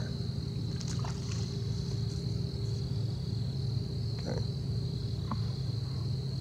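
Insects chirring steadily in a high, even tone, over a steady low rumble.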